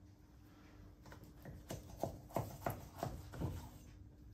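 Butcher's knife working a beef joint on a wooden chopping block: a string of irregular light knocks and taps, starting about a second in, over a faint steady hum.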